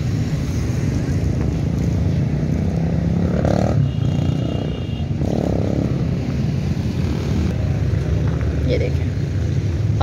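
Busy outdoor street-market ambience: a steady low rumble with faint voices in the background, and a short high tone about four seconds in.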